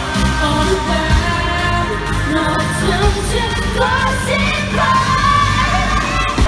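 Live K-pop performance: women singing over a pop backing track with a steady bass beat.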